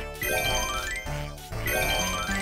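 A mobile game's stage-clear jingle: bright rising chime runs with dings, heard twice about a second and a half apart as one stage after another is cleared.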